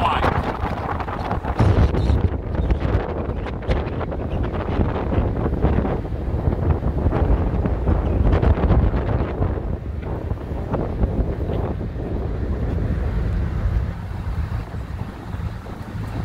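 Wind buffeting the microphone on a ferry's open car deck: a loud, low rumbling rush that swells and eases in gusts.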